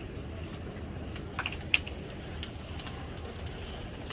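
Outdoor ambience around a rooftop pigeon loft: a steady low rumble, with a few short, sharp chirps about one and a half seconds in, the second of them the loudest.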